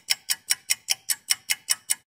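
Ticking sound effect: short, sharp, evenly spaced ticks at about five a second.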